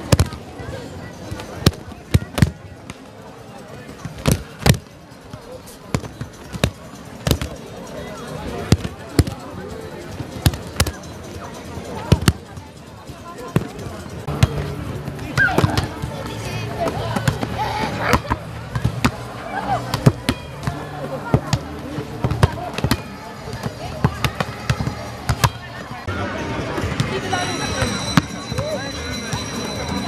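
Many sharp, irregular slaps and thuds: judo players' bodies hitting the mats in throws and breakfalls, then hands striking a volleyball, over voices around the pitch.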